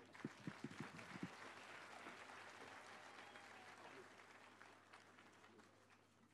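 Faint applause from an audience, fading away near the end, with a few soft knocks in the first second or so.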